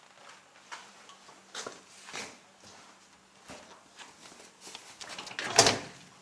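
Faint clicks and knocks of hands handling a motorcycle's body panel, with one louder knock about five and a half seconds in.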